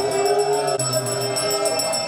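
Devotional group singing with harmonium accompaniment, held notes and gliding vocal lines, over a steady beat of small metal strikes like hand cymbals.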